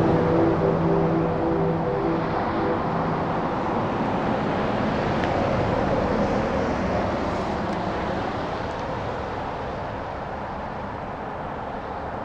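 A steady rushing noise that slowly fades, with no clear pitch or rhythm. A few held music notes die away in the first three seconds.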